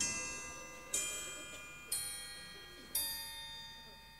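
A short musical phrase of four struck bell-like notes about a second apart. Each rings out and fades before the next is struck.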